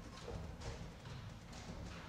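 Faint, irregular clicks and knocks, a few a second, over a low rumble, with no music.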